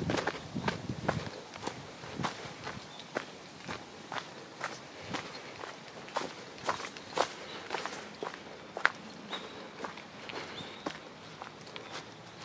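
Footsteps walking at a steady pace on a dirt path strewn with fallen autumn leaves, about two steps a second, each step a short crunch.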